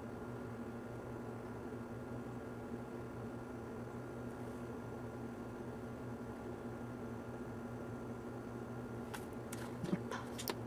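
Steady low electrical hum of background noise with no speech, and a few faint clicks near the end.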